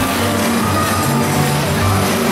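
Music with a low bass line playing over a steady hiss of splashing fountain water.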